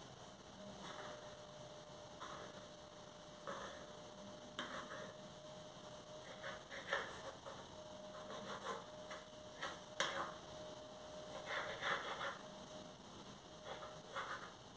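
Kitchen knife cutting a sheet of bread dough into strips, its blade tapping and scraping the worktop in short, irregular clicks. A faint steady hum runs underneath.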